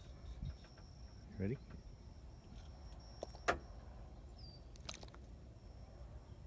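Plastic water bottle being handled, with one sharp click about three and a half seconds in and a few fainter ticks, as the supercooled water in it is jostled to set off freezing. A thin, steady high whine runs underneath.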